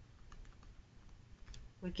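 Faint scattered taps and clicks of a stylus writing on a tablet, over a low electrical hum; a woman's voice begins near the end.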